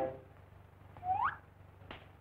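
Sparse early cartoon soundtrack: a single note dies away at the start, then about a second in a short rising squeak, and a sharp click just before the end.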